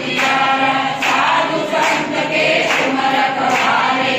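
A congregation singing a Hindu devotional song together, with hands clapping in a steady rhythm.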